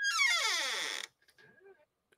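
A descending electronic sound effect: a brief high tone, then several pitches sliding down together for about a second before cutting off abruptly.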